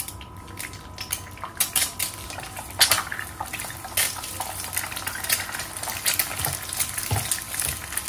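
Slotted wooden spatula scraping and knocking against a nonstick frying pan as an egg is scrambled, quick repeated strokes from about a second in. The egg sizzles faintly in the oil underneath.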